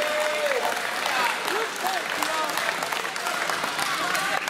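Spectators clapping, with scattered voices calling out among the applause, just after the referee signals ippon for a judo throw.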